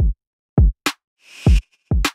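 GarageBand's 808 Flex electronic drum kit played from its touch pads: deep 808 kick drum hits, each falling in pitch, about four in two seconds. A short high click comes just before the middle, and a hissing snare-like hit comes about three-quarters of the way through.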